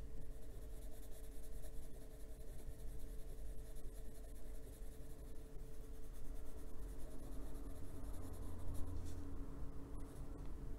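Grey Polychromos coloured pencil rubbing over paper as it shades, a soft steady scratching of the pencil tip on the page.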